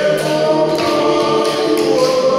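A group of voices singing together in harmony, choir style, on long held notes.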